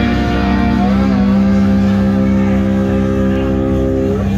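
Live country-rock duo of guitar and drums playing, settling about a second in onto one long held chord that rings steadily, typical of a song's final chord.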